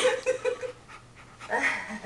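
A large dog panting close up, with a short steady whining tone in the first half-second.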